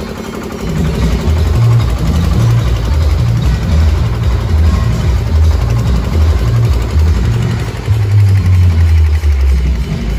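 Loud, bass-heavy DJ music from a truck-mounted sound system, dominated by a deep bass line that shifts pitch every fraction of a second, with little clear detail above it.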